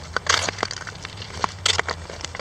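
Ice skate blades scraping across pond ice in two hissing strokes about a second and a half apart, with scattered sharp clicks between them.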